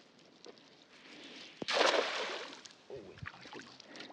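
A hand-thrown cast net landing flat on the water, its weighted rim and mesh hitting the surface in one short splash about two seconds in that dies away within a second.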